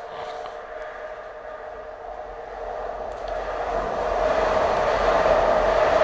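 A steady mechanical drone with a low rumble and a held humming tone, growing louder from about two seconds in.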